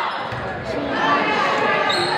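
Volleyball rally in a gymnasium: the ball being struck, with players and spectators calling out over an echoing hall.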